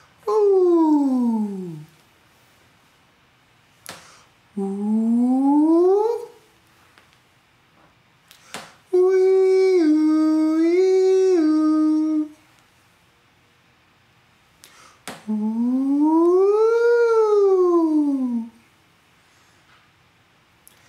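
A man's voice doing vocal siren warm-ups: four separate pitch slides with pauses between them. The first slides down, the second slides up, the third holds a note that steps up and down twice, and the last sweeps up and back down.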